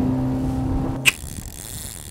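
Outboard motor of an aluminum fishing boat running at a steady speed. It breaks off abruptly about a second in with a sharp click, leaving a faint hiss.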